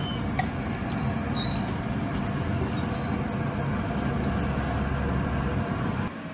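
A steady, noisy background din with a low rumble, a few short high squeaks in the first second and a half, and scattered clicks; it drops off suddenly at the very end.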